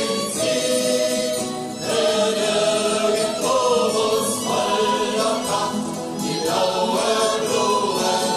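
A group of voices singing a German Wandervogel hiking song, sung phrases with short breaks about two seconds in and again near six seconds.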